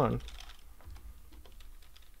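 Computer keyboard typing: a scattering of light, quick keystrokes as a line of code is entered.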